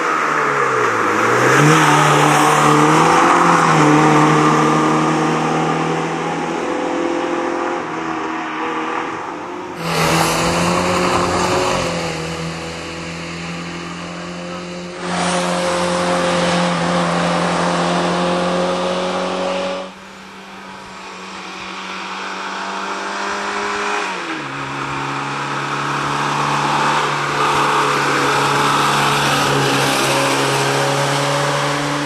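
Fiat 125p rally car's four-cylinder engine driven hard along a tarmac stage, its note dipping and climbing with gear changes and then held high. The sound jumps abruptly in level several times where separate passes are joined.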